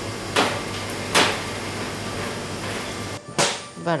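Two sharp knocks about a second apart, and a third near the end, over a steady hiss, as pieces of sticky pounded rice-cake dough are cut and handled in a ceramic bowl.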